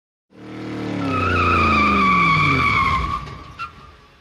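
A car's tyres squealing in a long skid while its engine note drops in pitch. The sound fades away after about three seconds, with a short click near the end.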